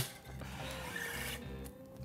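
Cut electric guitar strings scraping against metal as they are worked loose at the bridge and tailpiece: a rasping hiss lasting about a second and a half, opening with a sharp click.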